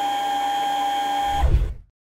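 A steady electric machine whine of one pitch over a soft hiss, from operating-theatre equipment. About one and a half seconds in there is a low thump, and the sound cuts off abruptly.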